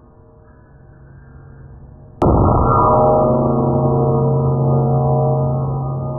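A sudden loud strike about two seconds in, followed by a long, slowly fading metallic ringing made of several steady tones, dull and with no high end, like a struck gong.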